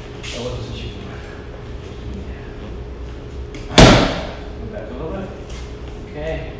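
A punch lands once on a handheld padded strike shield about four seconds in: a single sharp smack that rings briefly in the hall.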